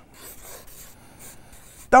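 Marker pen writing on a paper flip chart pad: a quiet run of short, scratchy strokes.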